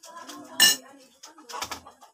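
A kitchen knife and dishes clinking as food is prepared: one sharp, ringing clink about two-thirds of a second in, then a shorter clatter near the end.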